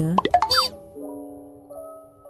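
Gentle background music holding soft sustained notes, with a short rising pop sound about half a second in.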